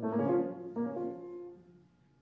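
Solo grand piano playing a classical phrase of a few notes that dies away into a short silence near the end.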